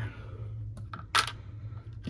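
A few small plastic clicks and one sharp tap about a second in as a plastic action figure is handled and set down on a hard tabletop, over a steady low hum.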